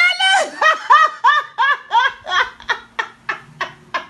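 A person laughing hard: a long run of short, high-pitched "ha" pulses, about three or four a second, each dipping in pitch, the later ones shorter and clipped.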